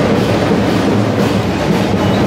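Loud music with a dense, steady din beneath it.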